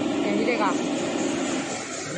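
Steady running noise of a CNC oscillating-knife cutting machine, with a brief whining glide about half a second in.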